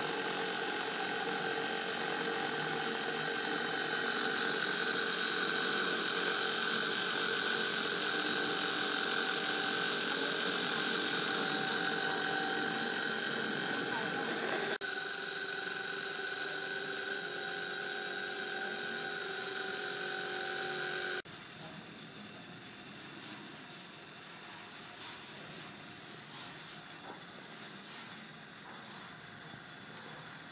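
Handmade DC electric motor with a magnet rotor and a brush-and-commutator, running at a steady speed with a continuous whir made of several steady pitches. The sound steps down suddenly in loudness twice, about 15 seconds in and again about 21 seconds in.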